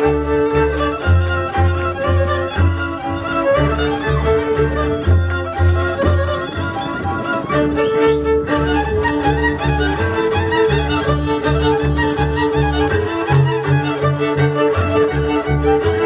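Folk dance music led by a fiddle, over a steady pulsing bass and sustained chords that keep a regular, brisk dance rhythm.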